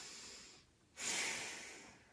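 A woman taking a slow, deep breath. One long breath ends about half a second in, and after a brief pause a second, louder breath starts and fades away.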